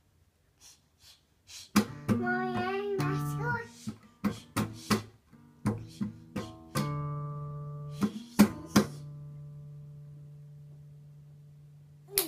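Open, unfretted strings of a nylon-string classical guitar struck and strummed unevenly by a small child's hand, about a dozen separate strums, the last ones left to ring and slowly fade. A child's voice sings briefly along with the first strums, about two seconds in.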